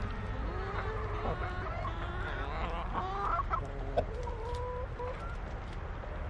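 A flock of chickens clucking as they forage, with many short calls overlapping over a low steady rumble.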